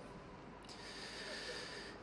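A Quran reciter drawing a deep breath close to the microphone in a pause between verses, taking in air before the next phrase: a faint soft hiss that starts a little past the first half-second and lasts just over a second.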